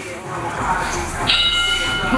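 Electronic buzzer of a gym round timer sounding once, a steady tone of about half a second starting a little past the middle, over gym noise.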